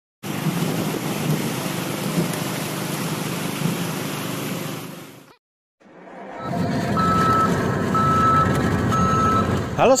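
Steady machinery noise at a construction site for about five seconds, a brief silence, then a heavy vehicle's engine with a reversing alarm beeping three times about a second apart.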